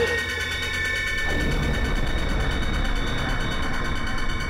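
Horror trailer score: a sustained high drone over a low rumbling texture. It opens with a brief hit, and the rumble thickens a little over a second in.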